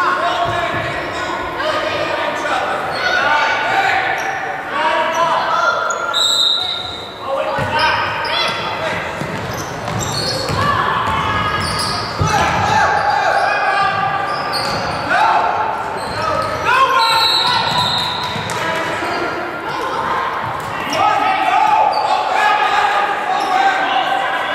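Indoor basketball game sounds: players and spectators shouting and calling out over one another, with a basketball bouncing on the hardwood court, all echoing in a large gym.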